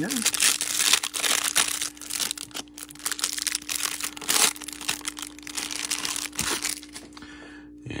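Clear plastic wrapper on a pack of trading cards crinkling as it is pulled open and stripped off by hand. It is loudest over the first four seconds or so and dies away near the end.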